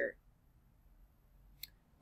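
Near silence with one short, sharp click about one and a half seconds in.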